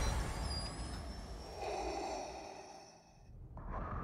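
Darth Vader's mechanical respirator breathing from the trailer soundtrack: one slow breath about halfway through, then a short drop to near quiet before the next one begins near the end.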